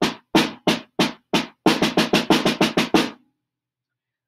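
Snare drum played with sticks, a paradiddle sticking pattern in even single strokes. It goes at about three strokes a second, then doubles to about six a second and stops a little after three seconds in. The head is damped by a cloth laid on it.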